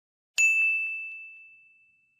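A single bell-like ding: one high, clear tone struck about a third of a second in, ringing out and fading away over about a second and a half.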